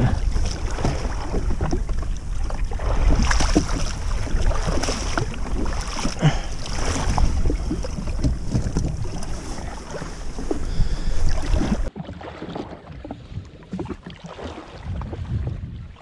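Wind buffeting the microphone over water slapping against a jetski hull, with scattered small knocks of handling gear. About three-quarters of the way through, the sound drops suddenly to a quieter level.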